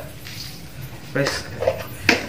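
A man's voice in a brief untranscribed utterance about a second in; before it, only low room noise.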